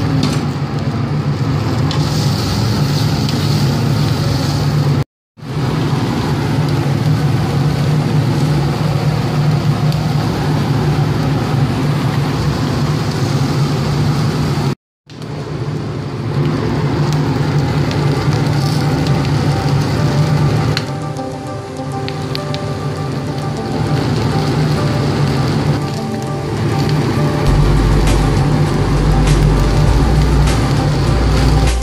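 Leeks and chicken feet sizzling on a hot flat-top griddle over a steady low roar. The sound cuts out suddenly twice, briefly.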